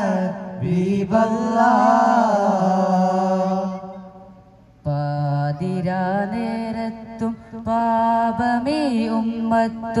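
Voices singing a devotional Islamic chant over a steady held low note. The singing fades out about four seconds in and starts again sharply about a second later.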